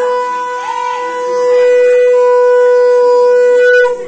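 Conch shell (shankha) blown in one long, steady note that grows louder partway through and stops just before the end.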